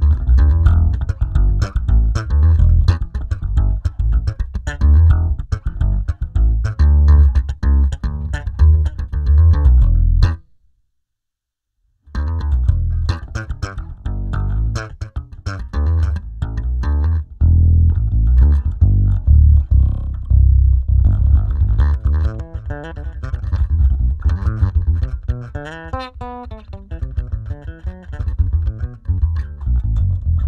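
Electric bass guitar played through a Zoom B6 multi-effects processor, with a ToneX One amp-modelling pedal in its effects loop blended with the dry signal. A plucked bass line breaks off for a moment partway through, then resumes, and a few notes bend and waver in pitch near the end.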